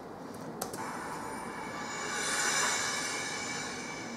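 Two short clicks, then a swelling, shimmering whoosh that peaks about halfway through and fades: the opening sting of the Workpoint TV clip as it starts playing.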